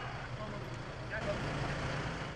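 Street ambience: steady traffic noise from vehicles.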